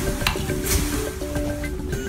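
Thin plastic wrapper crinkling and rustling in a child's hands, with small clicks, over background music playing a simple melody of held notes.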